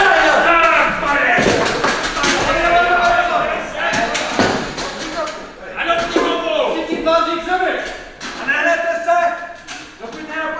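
Actors' voices on stage making long drawn-out, mooing-like calls, with a few sharp knocks in between.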